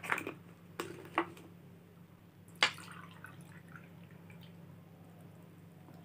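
Water poured from a plastic bottle into a drinking glass, faint, with a few clicks and knocks in the first second or so and a sharp click a little before the middle.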